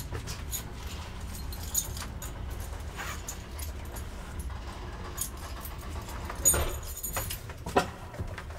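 ASEA-Graham elevator car running in the shaft with a steady low rumble and scattered clicks and rattles. Two louder knocks come near the end.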